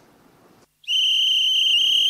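A whistle blown in one long, steady, high-pitched blast starting about a second in: a signal calling a child forward to give their name.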